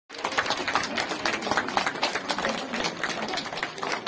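A crowd clapping: many hands in a dense, steady patter of claps.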